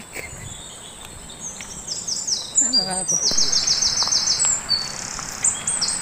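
A bird calling in short, high, downward-sweeping chirps, with a fast run of about ten notes a little over three seconds in.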